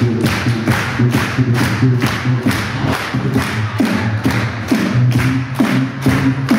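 Human beatboxing into a cupped handheld microphone: a steady beat of kick and snare sounds, about four hits a second, over a hummed bass line that steps up and down in pitch.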